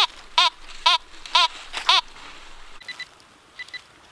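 Fisher F19 metal detector sounding off on a buried metal target: a short warbling tone that rises and falls in pitch, repeated about twice a second, stopping about halfway through. Near the end come two faint pairs of short high beeps.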